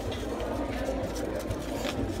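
A few short rustles and light clicks as a paper banknote is handled against a wallet, over a steady low hum.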